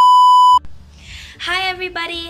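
A loud, steady 1 kHz test-tone beep of the kind played with TV colour bars, lasting about half a second and cutting off suddenly.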